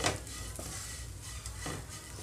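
Spatula stirring sliced ivy gourd (tindora) in a nonstick frying pan, scraping over the pan with a faint sizzle underneath. A sharper scrape comes at the very start and another near the end.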